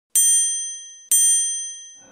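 Two bright bell-like dings about a second apart, each struck sharply and ringing out as it fades: a chime sound effect in a TV channel's animated logo intro.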